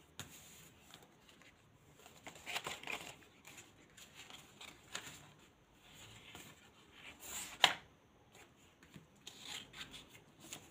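Paper card stock being handled: soft scattered rustles and scrapes as card pieces are slid and pressed down on a cloth-covered table, with one sharper tap about three-quarters of the way through.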